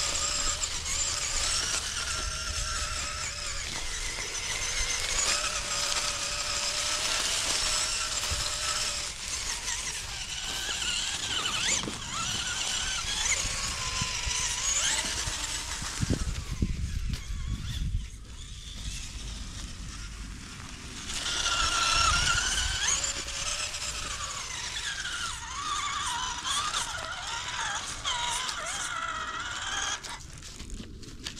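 Whine of a small RC crawler's drivetrain: the stock motor run through a Hobbywing 1080 ESC and the geartrain, its pitch rising and falling with the throttle as it crawls. It breaks off for a few seconds just past the middle, leaving a low rumble.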